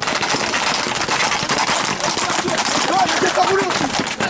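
Hooves of a tight group of Camargue horses clattering on an asphalt road, a dense run of sharp knocks, with crowd voices calling out over it from about three seconds in.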